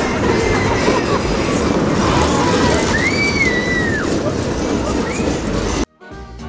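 Small family roller coaster's cars rattling and rumbling along the steel track, with a few high gliding squeals and fairground voices over it. The sound cuts off abruptly just before the end.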